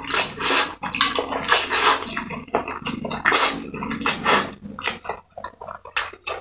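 Close-miked slurping of black bean sauce noodles (jjajangmyeon): a run of loud, wet slurps, then shorter, softer smacking chews near the end.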